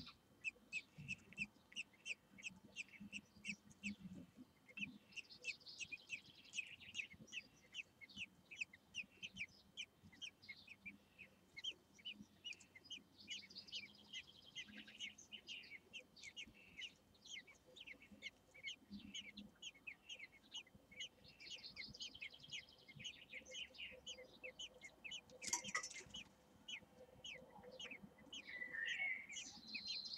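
Eurasian blackbird nestlings begging: rapid, high-pitched cheeping repeated several times a second while they are fed. Once, late on, a single sharp knock.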